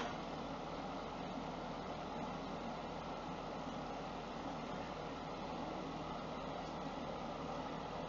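Steady, even background hiss of room noise, with no distinct sounds standing out.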